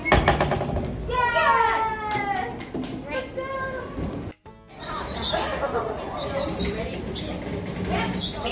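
Young children's excited voices, with high, falling squeals about a second in, mixed with an adult's voice. The sound breaks off briefly near the middle and then goes on with more chatter and play noise.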